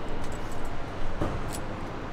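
A few light clicks and handling noises of a plastic T-tap connector being pushed onto a wire by hand, over a steady background hiss and hum.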